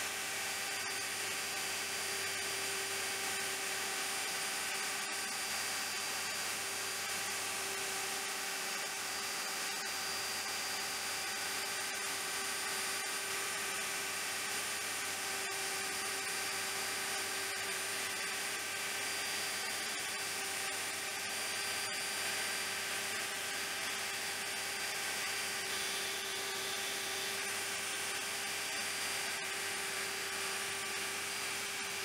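Shaper Origin handheld CNC router running steadily while it cuts a row of scalloped arcs into a board: an unbroken whine over a hiss of cutting.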